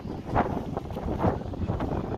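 Wind buffeting the microphone in uneven gusts, a rumbling rush that swells about half a second in.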